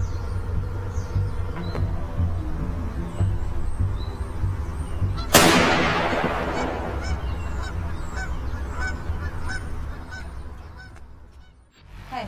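Geese honking over a low rumble, then a single sudden rifle shot about five seconds in, with a long echoing tail that dies away. The sound fades out shortly before the end.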